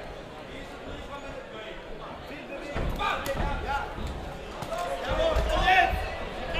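Dull thuds and knocks from a kickboxing bout in the ring, starting about three seconds in and coming in a cluster near the end, with voices shouting over them.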